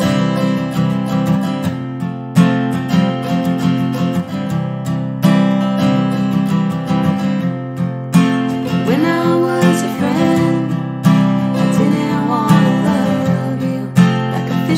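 Acoustic guitar strummed in a steady rhythm of chords. A little past halfway, a wordless sung voice joins over the guitar.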